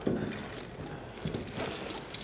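A sudden knock, then a few lighter knocks.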